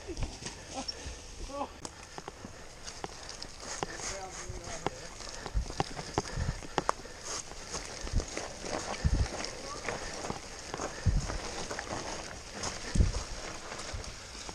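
Mountain bike descending a rough woodland dirt trail: tyres running over soil and leaves, with irregular knocks and rattles from the bike and low thumps as it hits bumps.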